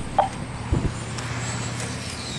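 Quiet track sound of 1/10-scale electric on-road RC cars running: a faint high motor whine over a steady low hum.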